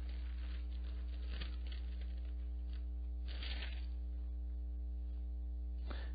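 Steady electrical mains hum, a low drone with a ladder of evenly spaced higher overtones, holding at one level throughout. A faint brief noise comes just past halfway.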